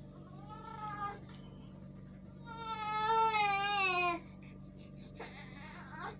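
Baby crying: a short cry near the start, then a louder, longer cry of about two seconds that falls in pitch.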